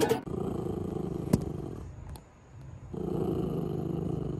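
Small terrier-type dog gnawing on a dried meat chew, with a continuous low rumbling sound that breaks off for about a second in the middle and resumes. A single sharp click comes a little over a second in.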